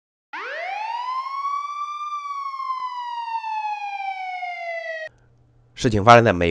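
A single siren wail that rises quickly in pitch for about two seconds, then falls slowly and cuts off abruptly about five seconds in.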